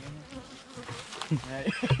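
Western honeybees (Apis mellifera) buzzing around an opened hive frame as the comb is harvested, with voices cutting in near the end.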